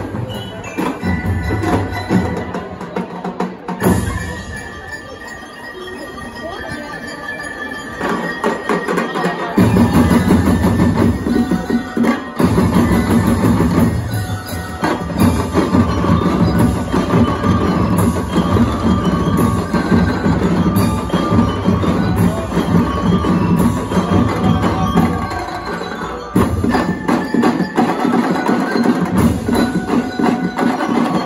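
A drum and lyre band playing: bell lyres ring out a melody over marching drums and percussion. The drums thin out to a quieter passage from about four seconds in, and the full band comes back in loud at about ten seconds.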